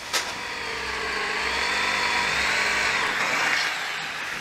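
Electric drill boring a hole through a metal flat-bar bracket clamped in a vise. After a click it runs as a steady motor whine, its pitch wavering under load, and it dies away at the end.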